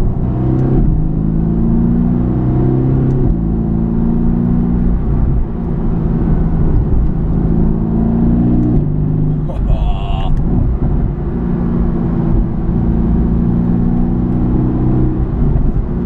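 Mercedes-AMG GT S twin-turbo V8 heard from inside the cabin, accelerating hard through the gears. The engine note climbs in pitch, then drops sharply at each upshift, about three times.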